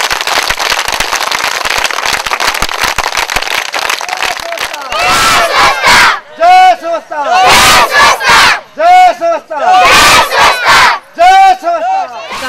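A large crowd of villagers raising a noisy clamour, then shouting slogans together in loud, short phrases about a second apart.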